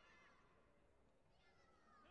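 Near silence: faint hall ambience with brief, distant high-pitched voice fragments.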